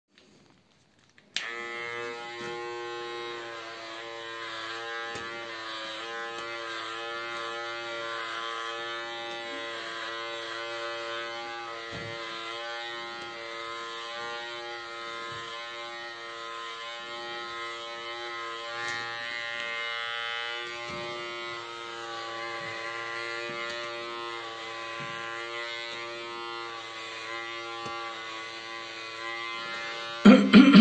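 Electric hair clipper switched on with a click about a second and a half in, then running with a steady buzz, with a few faint knocks as it is handled.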